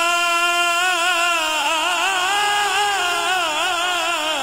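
A man singing a naat unaccompanied: one long held note that, about a second in, breaks into wavering, ornamented runs, easing off near the end.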